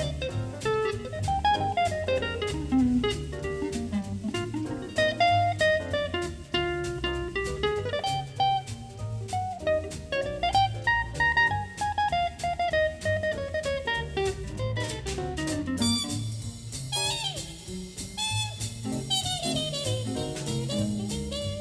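Instrumental break of a 1950s small-band jazz recording with no vocal: fast single-note solo lines over a walking upright bass and drums. A tenor saxophone is about to take over.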